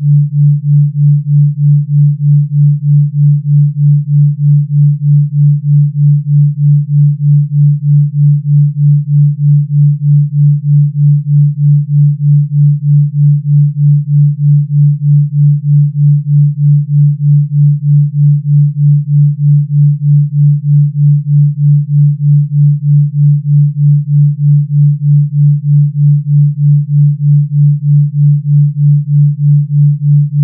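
Pure low sine tone of a delta 3.2 Hz binaural beat, steady in pitch, its loudness pulsing evenly about three times a second as the two slightly different tones beat against each other.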